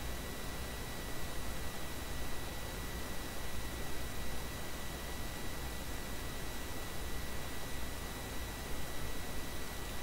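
Steady hiss of the recording's background noise, with a faint constant high-pitched whine and a low hum underneath.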